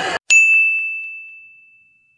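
A single high, bright bell ding, struck once just after the start and ringing out as it fades over about two seconds. It is a sound effect added in editing over the picture.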